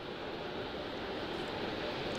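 Steady, even rushing noise of the launch pad's sound suppression water deluge flowing under the SLS mobile launcher, growing slightly louder.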